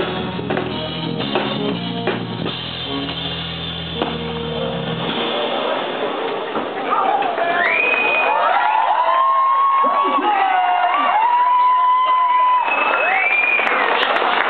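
Live rock band with drums and bass guitar finishing a song about five seconds in. Then the audience cheers, with loud whistles gliding up and holding high.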